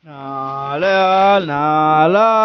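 A man singing unaccompanied into a microphone. He starts abruptly and holds long, drawn-out notes that step up and then back down in pitch.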